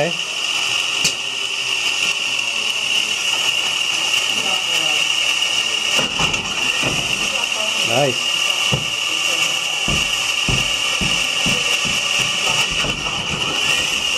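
Electric motor driving the pickup prototype's shaft of spinning wheels, running at low power with a steady high whine. From about six seconds in, a large inflatable ball is pushed against the wheels, giving a run of irregular dull thumps.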